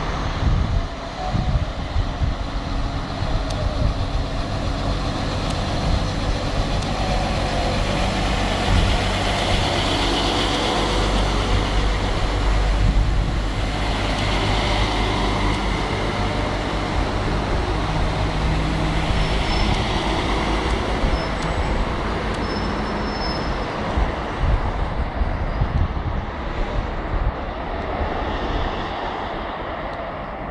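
London Midland Class 172 Turbostar diesel multiple unit pulling out of the platform, its underfloor diesel engines running under power with the wheels rumbling on the rails. It is loudest as the carriages pass close, about halfway through, then fades as it draws away.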